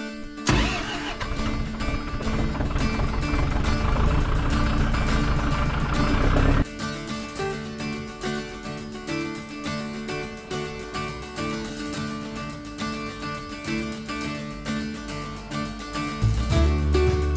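Background music, with a compact tractor's engine running loudly under it, growing louder from about half a second in, then cutting off suddenly at about six and a half seconds; only the music continues after that.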